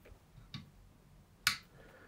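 Two short, sharp clicks: a faint one about half a second in and a louder one about one and a half seconds in.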